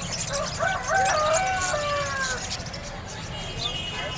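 A rooster crowing once, a call of about two seconds that rises in steps and trails off on a long falling note, over the murmur of a busy bird market.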